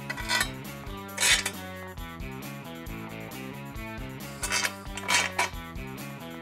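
Background music with a steady beat, broken by a few short metallic clinks and rattles of bolt hardware being fitted through a metal bracket and strut: one about a second in, and a couple more near the end.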